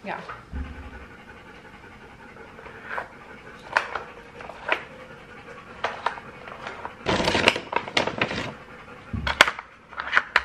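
A dog panting while sharp clacks and knocks of a plastic treat-puzzle toy sound as its pieces are pushed around, with a longer scraping rattle about seven seconds in.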